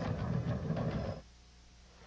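The tail of a TV news promo's closing music and sound effects, cutting off about a second in, followed by a moment of near silence.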